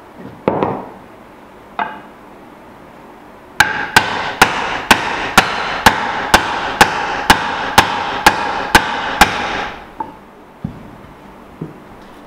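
Mallet knocking a dovetailed drawer joint together, maple side onto walnut front. A couple of single taps come first, then a steady run of about two blows a second for some six seconds, with the wood ringing between blows.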